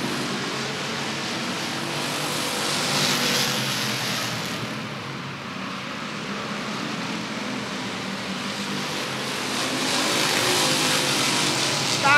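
A pack of Roadrunner-class race cars running at speed around a short asphalt oval. The engine noise swells as the cars come by about three seconds in and again near the end.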